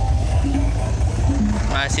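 Loud electronic dance music with heavy, pounding bass played through a truck-mounted stack of loudspeakers, with a voice over it near the end.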